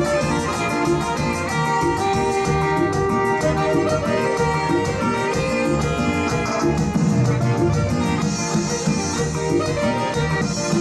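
Live dance band playing an instrumental passage of a dance song, with a steady beat.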